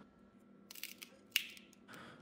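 Faint handling sounds of a medical isolation transformer being taken apart: a few light clicks and rustles of its metal enclosure and parts, with a sharper click a little after the middle.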